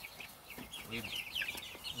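A flock of young Cornish Cross meat chickens calling: many short, high cheeps overlapping, most falling slightly in pitch.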